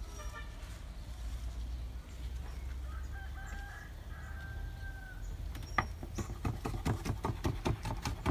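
A rooster crows in the background about three seconds in. Near the end comes a quick run of knife chops on a wooden cutting board.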